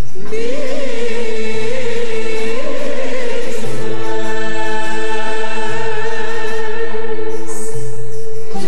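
A woman singing a Turkish art-music (Türk sanat müziği) song in makam Kürdilihicazkâr, with an ornamented, wavering vocal line. An instrumental ensemble accompanies her over a repeating bass figure in curcuna rhythm. After a brief break at the start, the voice enters following the instrumental introduction.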